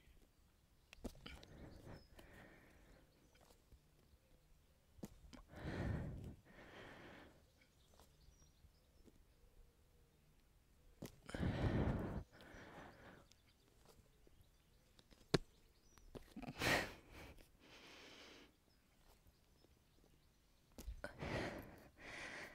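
A woman breathing hard with strong breathy exhales, each followed by a softer breath, about five times a few seconds apart, as she kicks up into hops from downward dog.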